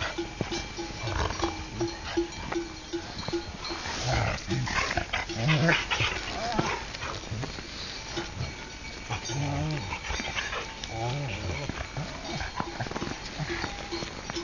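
A large flock of sheep bleating, many calls overlapping at different pitches through the whole stretch, over a constant scatter of small clinks and knocks.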